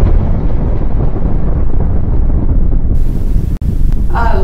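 Explosion sound effect: a loud, deep rumble rolling on after the blast, with a hiss joining about three seconds in.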